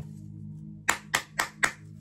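Four sharp snaps, about four a second, from tarot cards being handled and laid on the table, over a steady background music bed.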